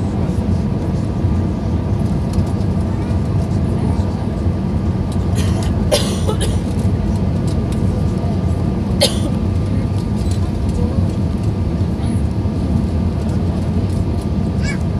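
Steady cabin noise of an Airbus A320 airliner on final approach: engines and rushing air. Two brief sharp sounds about six and nine seconds in.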